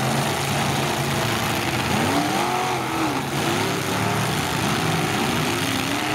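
Demolition derby cars' engines running together, one or more revving up and down several times over a steady low running note.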